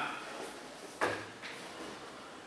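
A single short knock about a second in, from a teaching-model box being handled, against quiet room tone.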